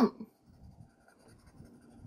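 Pencil shading in a bubble on an answer sheet, the lead scratching in quick strokes all in one direction.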